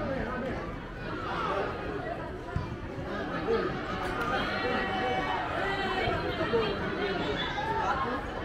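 Several people talking over one another at a moderate level: spectators' chatter at an outdoor football match, with no one voice standing out for long.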